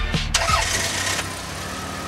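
Background hip-hop music cuts off a moment in, and a car engine starts, running loudest for about a second before settling into a steady idle.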